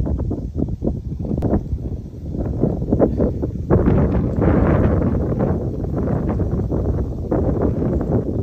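Rustling and crackling noise on the microphone, with a denser, steadier stretch of noise in the middle.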